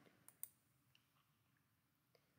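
Near silence, broken by a couple of faint mouse clicks close together about half a second in.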